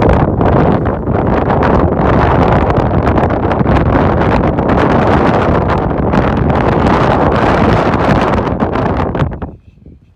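Strong wind blowing across the microphone, a loud, steady rumble that drops away suddenly near the end.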